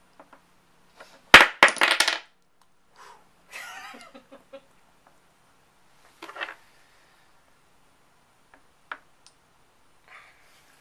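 Dominoes clattering: a loud burst of rapid clacks about a second in, then a few lighter clicks and clatters as dominoes are handled and set on a stacked tower.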